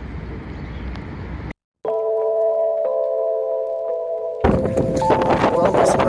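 A short steady hum of several sustained tones, cut off about four and a half seconds in by wind buffeting the microphone hard. Before the tones there is a stretch of soft outdoor noise and a brief dropout.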